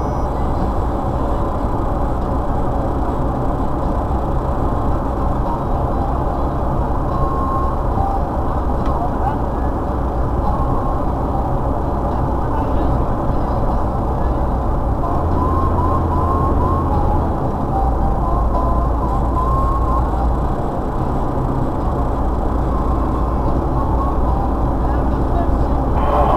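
Steady road and engine noise inside a car's cabin, cruising at highway speed, with a low drone that shifts slightly around the middle.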